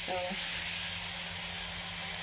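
Electric disinfectant fogger running: a steady hissing rush of its blower with a faint high whine, switched on just before.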